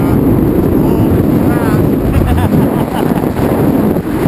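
Wind buffeting the microphone during a descent under a parachute canopy, a loud steady rumble. Faint voices break through now and then.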